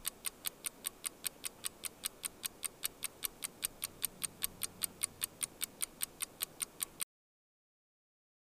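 Stopwatch ticking sound effect, fast and even at about four ticks a second, cutting off suddenly about seven seconds in.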